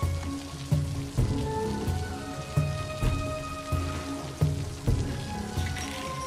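Rain falling steadily, under a film score of held tones and low, heavy pulses that recur about every half second to a second.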